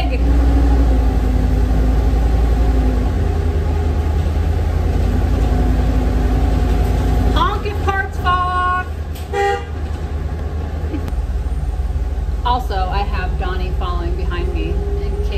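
Ford E350 shuttle bus driving, its engine and road noise a loud, steady low rumble inside the cab. A vehicle horn toots for under a second about eight seconds in, then briefly again a second later.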